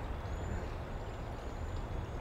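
Outdoor background noise: a steady low rumble with an even haze over it, and a faint thin high tone now and then.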